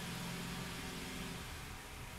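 Steady low hum with an even hiss: room background noise from a running machine such as a fan or air conditioner.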